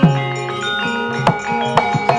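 Javanese gamelan ensemble playing: bronze metallophones ringing held tones, with sharp drum strokes, some dropping in pitch, about a second in and near the end.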